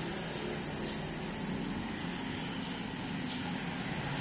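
Steady low rumble with a hiss above it, even throughout, like background engine or traffic noise, with no distinct sounds standing out.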